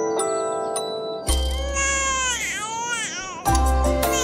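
A soft glockenspiel-like lullaby melody, broken about a second in by a newborn baby's cry that lasts about two seconds over a low bass note; the melody notes return near the end.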